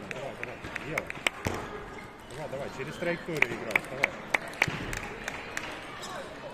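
Plastic table tennis ball clicking in quick, evenly spaced runs of bounces and hits, about three clicks a second, with the sharpest run a little past the middle. Faint voices underneath.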